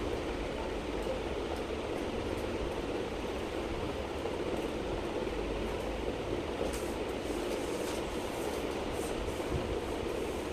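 A steady, even rushing background noise with no speech. A few faint clicks and rustles come near the end as clothes and plastic-wrapped garments are handled.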